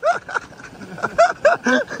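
Men laughing in short bursts, several separate laughs in quick succession.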